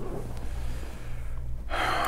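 A short, sharp intake of breath near the end, over a steady low hum.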